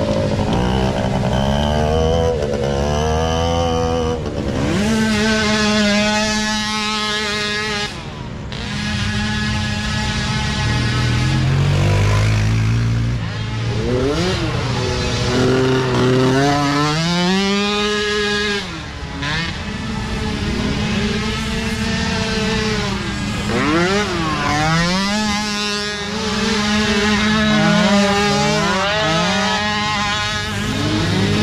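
Small engines of youth micro ATVs revving up and easing off as several quads pass one after another, the pitch rising and falling again and again.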